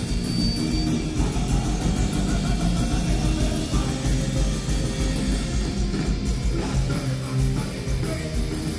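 Live rock band playing a fast song at full volume: electric guitar, bass guitar and a drum kit keeping a steady beat.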